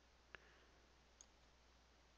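Near silence with two faint clicks of a computer mouse, one about a third of a second in and a smaller one just after a second, as a box is dragged and resized on screen.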